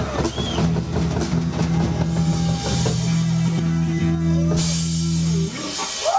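Live rock band, electric guitars and drum kit, playing the last bars of a song and ending on a held chord that stops about five and a half seconds in.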